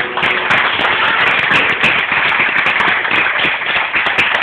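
Audience applauding: dense, steady clapping that starts right as the last note of the music dies away.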